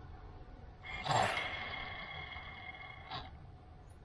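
A MEPS SZ 2306 brushless drone motor with a loosely seated propeller, spun up from Betaflight for a motor direction test. It starts about a second in with a brief rush of noise, runs with a steady high electronic whine, and stops with a click a little after three seconds.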